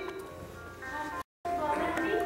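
Performers' voices from a theatre stage, quieter at first and cut by a brief total dropout of the sound a little over a second in, then resuming.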